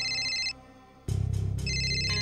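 Mobile phone ringtone: a high, fast-trilling electronic ring that breaks off about half a second in and starts again near the end, over a low steady background music drone.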